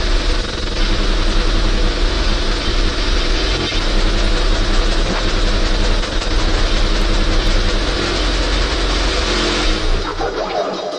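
Dense, heavily distorted hardcore electronic music from a terror-style DJ mix: a continuous loud wall of harsh noise over a steady deep bass.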